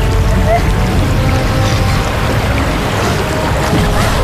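A loud, steady rushing of swirling water, a magic water-vortex sound effect, over a background music score.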